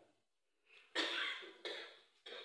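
A cough in two sharp bursts about two thirds of a second apart, after a moment of silence.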